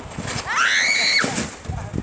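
A child's high-pitched shriek while sliding down a snowbank on a sled: one cry that rises in pitch about half a second in, holds briefly and cuts off after under a second.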